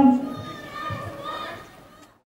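A race commentator's voice trailing off at the start, then faint background voices that fade away, with the sound dropping to silence at the very end.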